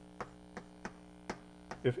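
Chalk tapping and clicking on a blackboard while writing, about half a dozen short irregular taps, over a steady electrical hum.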